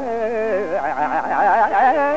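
Carnatic classical music in raga Kharaharapriya: a male voice sings phrases full of fast oscillating gamakas, with a violin closely following the melody in the second half.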